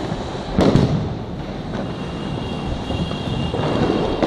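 Fireworks going off: one loud bang with a trailing echo about half a second in, and fainter bangs later. Under them runs a constant noisy background of more distant fireworks.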